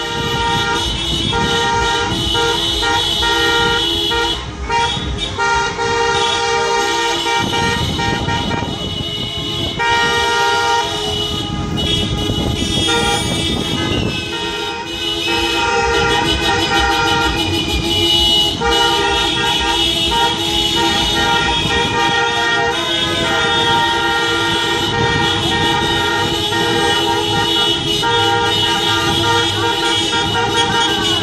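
Many car horns honking at once in celebration, several steady tones at different pitches overlapping and sounding on and off without pause, over the running of car engines and tyre noise.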